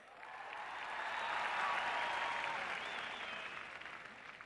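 A large audience applauding, swelling over the first two seconds and then dying away.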